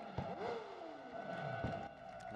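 Superbike engine being blipped on the throttle, revving in repeated bursts: each rev jumps quickly in pitch and then falls away over about a second.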